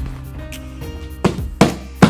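Background music, with two sharp thumps in the second half as a toddler's hands slap a taped cardboard shipping box.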